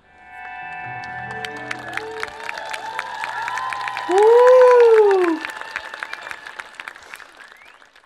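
A live band's final chord ringing out, then an audience applauding, with a loud cheering call that rises and falls in pitch about four seconds in. The clapping thins out and fades near the end.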